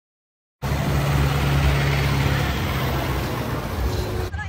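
Loud, steady engine noise with a low hum, starting abruptly about half a second in.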